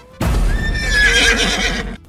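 A horse whinnying: a single wavering high cry over a noisy, bass-heavy bed, about a second and a half long. It starts and stops abruptly, like an edited-in transition sound effect.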